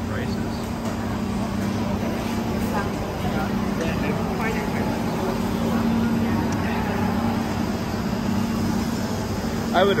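Food court ambience: a steady low hum, with scattered faint voices of diners nearby.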